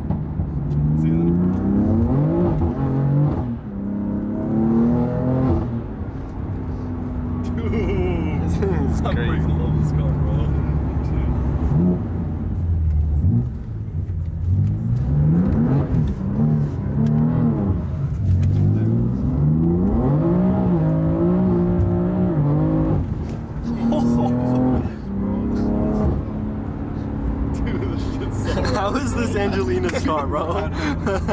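Stage 2 tuned BMW F80 M3's twin-turbo inline-six, heard from inside the cabin, pulling hard through the gears: the engine note climbs and then drops at each shift, several pulls in a row.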